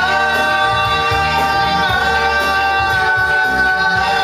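Man singing one long held note into a microphone over a karaoke backing track; the note steps up slightly in pitch about halfway through.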